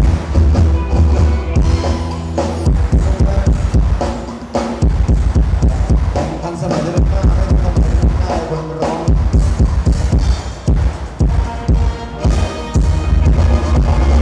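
Live band playing Thai ramwong dance music through a PA, a drum kit and bass keeping a steady beat, with a voice over it.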